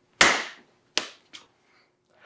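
Hands slapping together in a handshake routine: one loud sharp slap, then a lighter slap about a second later and a faint one just after.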